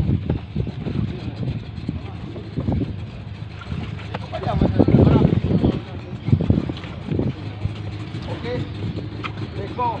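Men's voices talking, indistinct and overlapping, loudest around the middle, over a steady low engine hum.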